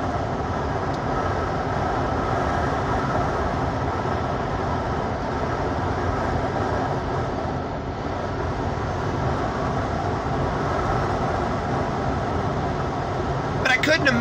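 Steady road and engine noise inside the cab of a moving vehicle.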